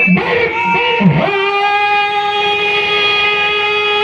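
A man singing a devotional zikr chant into a microphone: his voice bends through a short phrase, then from about a second in holds one long, steady note.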